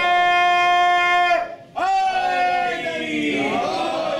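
A man's voice chanting in a drawn-out melodic style. He holds one long steady note, breaks off briefly about one and a half seconds in, then sustains a second note that trails away into shorter phrases.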